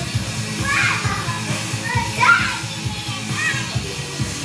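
Music with a steady beat plays, over which a young girl gives three short, high-pitched excited shouts.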